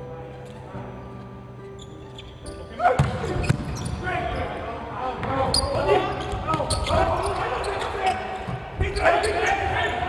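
Arena music with held notes, then about three seconds in a volleyball rally starts: sharp smacks of hands striking the ball, squeaks and players' shouts echoing in a large indoor hall.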